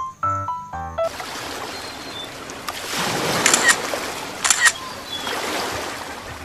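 Background keyboard music stops about a second in and gives way to the steady rush of ocean surf. Two sharp clicks about a second apart sound over the surf near the middle, like the sound effects of an animated subscribe button.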